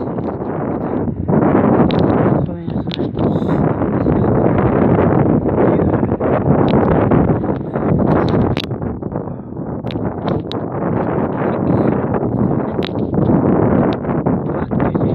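Wind buffeting the phone's microphone: a loud, rough, steady rushing with brief lulls, and a few small clicks from the phone being handled.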